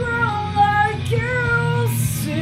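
A female voice singing long held notes in a slow ballad melody over a steady low band accompaniment, with a short break between two phrases about a second in.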